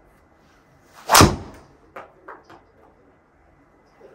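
A golf driver strikes a teed ball with one sharp, loud crack about a second in, hit in the middle of the clubface. A few faint ticks follow.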